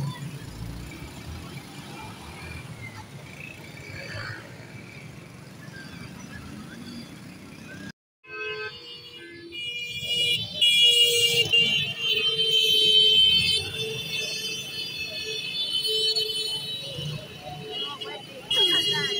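Motorbikes and scooters running in street traffic. After a sudden cut about halfway, several horns sound together in long, steady blasts as a motorbike procession rides past.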